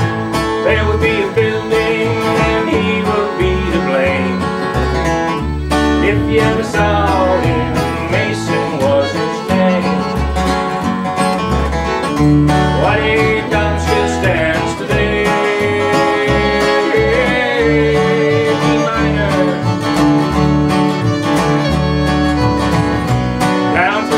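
Instrumental break in a live acoustic country song: fiddle playing the lead with sliding notes over strummed acoustic guitar and an upright bass keeping a steady beat.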